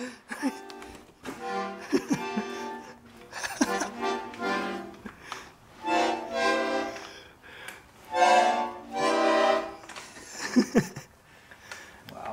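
Old wooden-cased button accordion played in about five short, held chords with short gaps between as the bellows are pushed and pulled. The bellows have come loose from the case and are being held together by hand, yet the reeds still sound.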